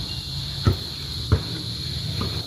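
A basketball bouncing twice on the ground as it is dribbled, two dull thuds a little over half a second apart, over a steady high chirring of crickets.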